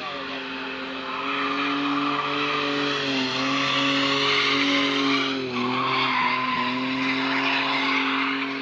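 Drift car sliding through a corner, its engine held at high revs while the rear tyres squeal. It gets louder about a second in and is loudest midway as the car passes, with two brief dips in the engine note.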